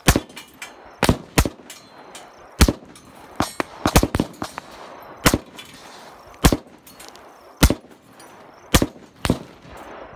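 Gunshots fired in a string at a pane of bulletproof glass: about a dozen sharp cracks at uneven gaps of roughly a second, some in quick pairs, each with a short ring.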